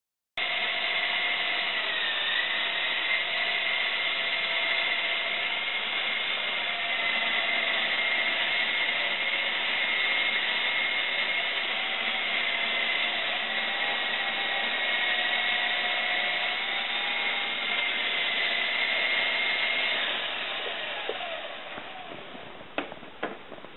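Shuangma 9101 RC helicopter's electric motors and rotor blades running: a steady high whine over a whooshing air noise, starting suddenly and winding down near the end.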